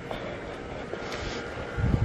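Steady outdoor rushing noise with wind and handling on a moving handheld camera's microphone, and a low thump near the end.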